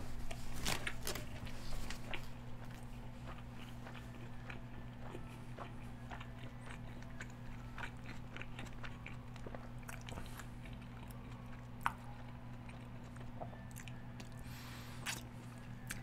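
A person chewing a mouthful of a Taco Bell chicken Quesalupa (cheese-filled fried chalupa shell) close to the microphone: scattered wet mouth clicks and crunches, busiest in the first couple of seconds, with one sharper click near the end. A steady low hum runs underneath.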